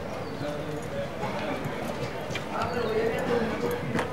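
Footsteps of a woman walking up a concrete alley, a series of short clicks, under faint background voices.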